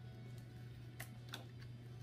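Small scissors snipping through a paper sticker sheet: two short, faint snips, about a second in and again just after, over soft background music.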